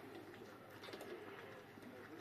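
Faint sounds of a litter of Tibetan mastiff puppies eating together from a row of metal bowls.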